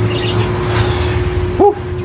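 Pigeon cooing once, briefly, about one and a half seconds in, over a steady low hum.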